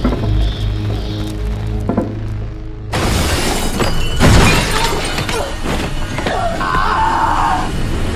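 Horror film trailer soundtrack: a low droning score, then about three seconds in a sudden loud, dense stretch of crashing hits and effects over the music, loudest a second later.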